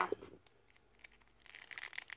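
Plastic action figure being handled as its head is pulled off and a replacement head is pressed onto the neck peg: a sharp click at the start, a quiet gap, then small faint clicks and rubbing of plastic under the fingers near the end.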